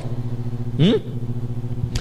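A steady low hum made of several even tones, with a man's short rising "hum?" about a second in.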